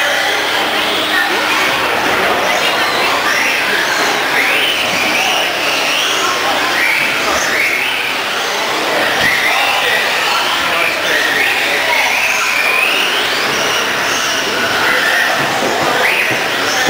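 Electric RC stadium trucks racing, their motors whining in rising sweeps as they accelerate out of the corners, one after another about once a second, over a steady din.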